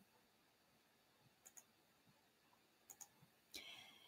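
Near silence: faint room tone with two pairs of faint short clicks, about a second and a half in and about three seconds in, and a faint noise just before the end.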